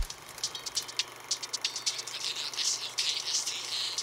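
Quiet crackle and hiss with a faint steady low hum.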